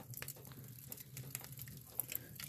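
Wood fire crackling faintly in an open wood-stove firebox: scattered small pops and ticks, with a sharper pop near the end.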